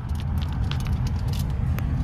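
Steady low rumble of road and engine noise heard inside a moving car's cabin, with a few faint clicks.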